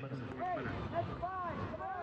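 Distant voices calling out in an open stadium, heard as several short rising-and-falling shouts over a low murmur of ambience.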